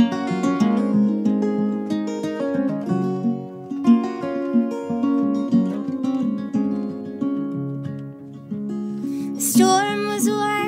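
Two acoustic guitars fingerpicking an instrumental passage of a folk song, a run of plucked notes over a repeating low figure.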